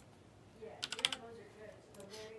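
A few quiet computer-keyboard key clicks about a second in, over low room tone.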